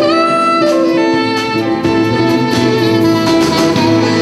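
A small band playing live: a soprano saxophone carries the melody, bending up into a held note near the start, over accordion chords, a bass line and light drums.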